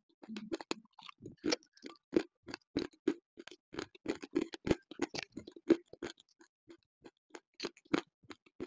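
Close-miked crunching and chewing of hard Juhu nakumatt edible clay chunks: a dense, irregular run of sharp crunches, several a second.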